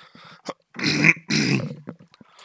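A man clearing his throat twice: two short, rough, low-pitched bursts about a second in.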